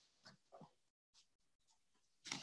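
Near silence on a webinar audio line: faint room tone with two soft, brief noises early on, and a moment of dead silence about a second in.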